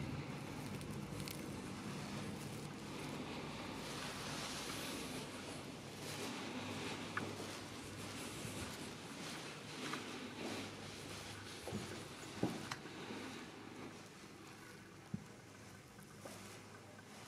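Faint steady background noise of a room, fading somewhat in the second half, with a few scattered light taps and clicks from the camera being handled and moved.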